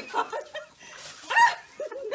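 White domestic turkey giving a few short, high calls with bending pitch, the loudest a little past the middle.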